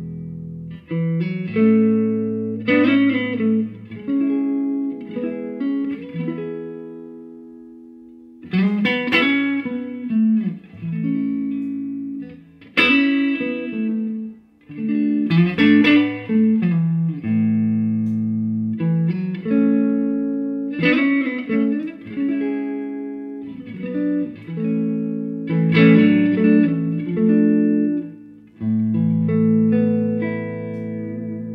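Electric guitar played through a Laney Cub Supertop EL84 valve head and its matching cab, strumming chords with a fairly clean tone. One chord is left to fade out about seven seconds in before the playing picks up again.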